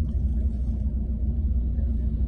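Steady low rumble of a car's engine heard from inside the cabin.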